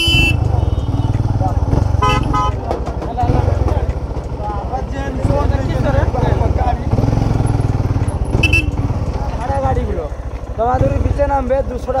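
Motorcycle engine running at low speed with a steady low throb while creeping through traffic. A vehicle horn toots right at the start and again about two seconds in, a short high beep follows later, and people's voices can be heard around it.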